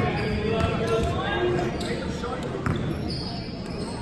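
A basketball bouncing a few times on a hardwood gym court under spectators' chatter, echoing in a large gymnasium.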